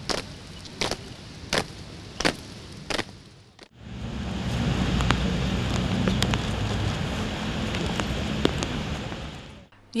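Sharp footsteps of a group marching in step on paving, about one step every 0.7 seconds, over a faint hiss. After a cut about four seconds in comes louder steady outdoor noise with a low rumble and a few faint clicks.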